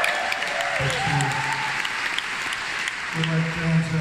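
Audience applauding, with voices heard over the clapping, a nearby one talking near the end.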